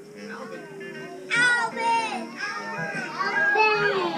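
A group of young children's voices over background music, quiet at first, then loud and high-pitched from about a second in.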